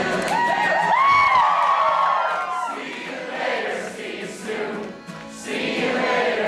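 Audience singing along with many voices together to an acoustic guitar and accordion, with a few voices swooping up early on and the sound thinning briefly near the end.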